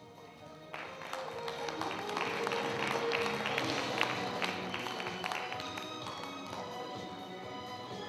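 Background music with a steady melody. About a second in, hand clapping starts suddenly over it, grows dense around the middle and then thins out.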